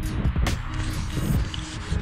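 Wind buffeting the microphone of a handheld camera on a moving bicycle, a rough rumbling rush that rises and falls, with background music faintly underneath.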